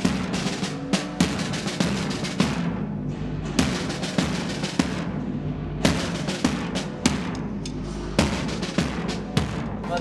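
Marching drums playing: a large bass drum and snare drums beating a fast, dense rhythm, with two short lulls.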